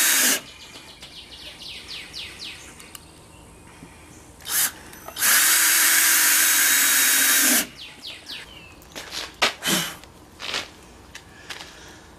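Cordless drill running in bursts as it bores into the edge of a wooden speaker-box panel. A run ends just after the start, there is a short blip about four and a half seconds in, and a steady run of about two and a half seconds follows in the middle, with faint chirps and clicks in the gaps.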